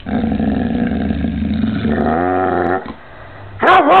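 Pit bull vocalizing: a low, steady growl-like grumble for about two seconds that rises in pitch into a short wavering moan. After a brief pause, a louder wavering howl starts near the end.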